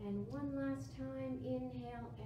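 A high voice singing slow, long held notes, stepping up to a higher note about a third of a second in.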